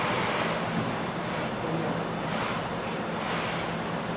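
Steady rushing noise with a low hum underneath.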